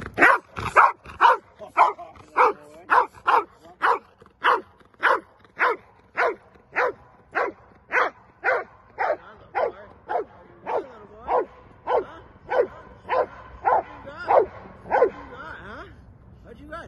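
Belgian Malinois barking in a steady run, a little under two barks a second: a guard dog's alert barking at an approaching person.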